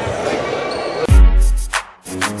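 Background music with a heavy bass-drum beat, one deep kick hit about a second in.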